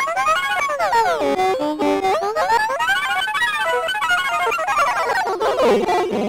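Circuit-bent Interactive Planetarium toy's voice chip, its speech chopped into a fast stutter by the phrase-retrigger LFO and bent in pitch by the pitch LFO and pitch knob. It comes out as a warbling electronic cacophony that sweeps up and down in pitch in long arches, about three times.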